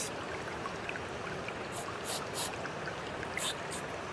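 A steady rush of running water, with five short hisses from a handheld liquid nitrogen freeze-spray can being sprayed onto a koi's wound to freeze the skin.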